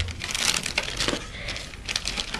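Packaging and accessories being handled: irregular crackling and crinkling, busiest in the first second.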